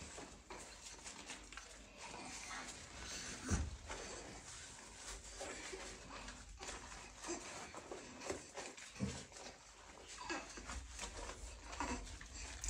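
Faint, irregular rubbing and wet squishing of a soapy washcloth being worked over a lathered baby doll, with a couple of soft thumps.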